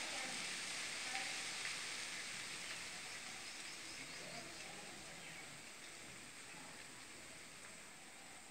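A steady hiss that fades gradually over several seconds.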